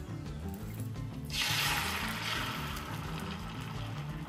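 Beaten egg poured into a hot rectangular omelette pan, starting to sizzle suddenly about a second in, loudest at first and then slowly dying down, over background music.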